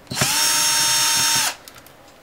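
Cordless drill/driver running once for about a second and a half, backing a screw out of an LCD panel's metal frame. Its motor whine spins up, holds steady, then winds down and stops.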